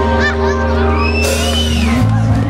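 Live rock band music from a festival stage, holding a long low bass note, with a high tone that rises and falls in pitch over the second half.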